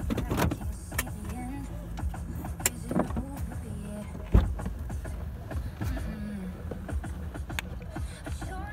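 Car rolling slowly, heard from inside the cabin: a steady low road and engine rumble with scattered knocks and one sharp thump about four and a half seconds in.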